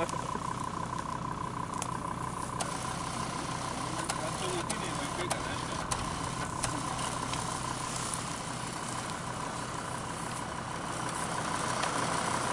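An SUV engine idling steadily, with faint voices in the background and a few faint clicks.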